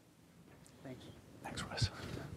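Faint whispering close to a podium microphone, with a soft low thump near the end.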